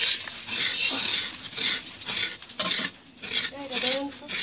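A metal spoon scraping coconut meat from the inside of a hard coconut shell, in repeated rasping strokes about two a second, with bits of grated coconut falling into a plastic bowl.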